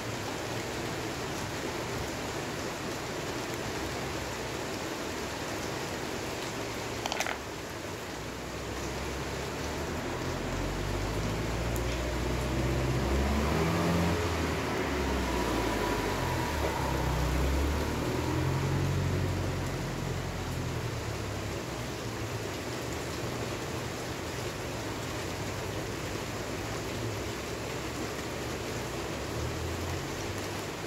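A steady hiss throughout, with one sharp click about seven seconds in and a low rumble that swells from about ten to twenty seconds.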